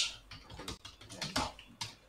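Typing on a computer keyboard: a quick, irregular run of keystroke clicks.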